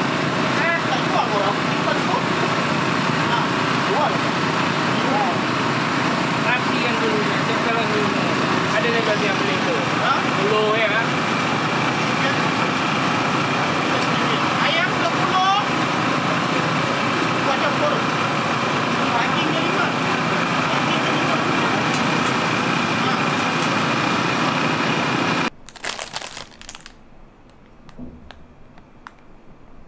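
Busy street-food stall ambience: a loud, steady din with people's voices chattering in the background. About twenty-five seconds in it cuts off abruptly to a quiet room with faint rustling and clicks.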